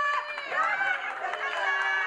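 A crowd of women calling out and cheering together in high, drawn-out voices, several voices overlapping.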